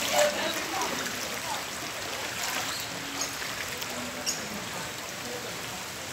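Steady rush of brown floodwater running along a flooded street, with faint voices.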